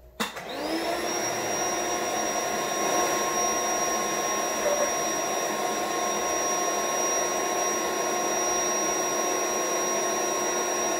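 Electric air-mattress pump switching on with a click, its motor spinning up within the first second to a steady whine over a rush of air, then running on unchanged.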